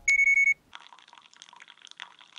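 A digital kitchen scale beeps once, a steady high tone about half a second long. Then comes the faint trickle of hot water being poured onto coffee grounds in a pour-over filter.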